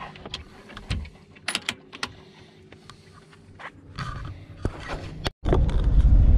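Scattered sharp clicks and metallic rattles from a metal dog crate's mesh door being handled and latched. Near the end it cuts suddenly to the steady low rumble of a van engine heard from inside the cab.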